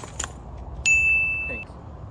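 A single high-pitched ding about a second in: one steady pitch with fainter higher overtones, sharp onset, fading out over just under a second. Two short clicks come just before it.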